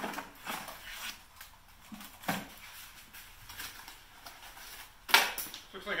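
Handling noises as a motorcycle charger is taken out and handled: scattered rustles and light knocks, with a louder knock about five seconds in.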